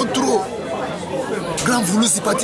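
Speech: voices talking continuously, likely in Lingala, which the recogniser did not write down.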